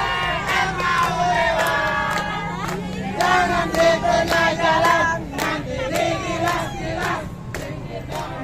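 A group of marchers chanting together in loud unison, with hand claps breaking in sharply all through.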